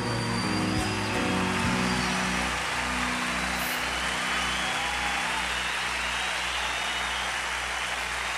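A live band's last held chord dies away over the first two or three seconds while a concert audience applauds and cheers, and the applause carries on steadily afterwards.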